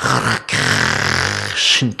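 A man's loud, harsh, breathy vocal sound, a rasping hiss voiced over low pitch, close to the microphone. It starts about half a second in and lasts just over a second, with brief speech around it.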